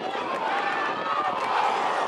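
Several voices shouting at once, rising and loudest about one and a half seconds in, as spectators and players react to a shot on goal.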